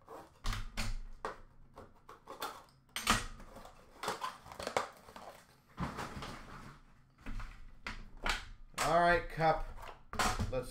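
Sports-card packaging and boxes being handled on a glass counter: a scatter of irregular clicks, rustles and crinkles. A short bit of voice comes in near the end.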